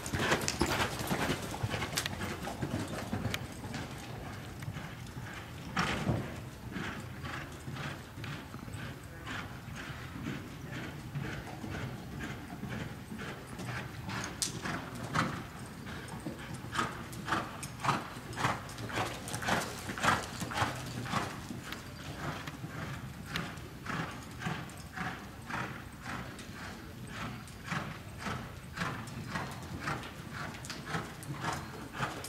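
Hoofbeats of a ridden horse moving steadily on soft arena dirt: an even run of dull thuds, about two a second, growing louder in the middle stretch as the horse passes close by.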